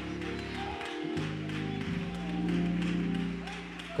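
Organ playing held chords, the chord changing about a second in and again about two seconds in.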